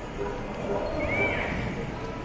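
Outdoor background of people's voices, with a short high-pitched call about a second in that rises and then falls.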